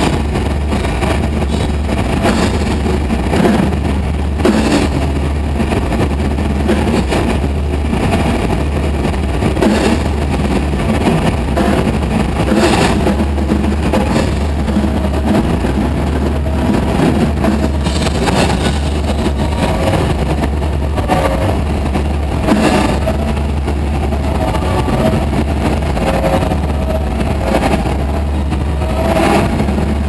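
Live band playing loud: a dense, steady wall of amplified sound over a constant low drone, with scattered drum and cymbal hits.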